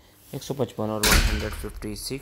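A man's voice saying verse numbers, with a brief loud thump and rush of noise about a second in, over the speech.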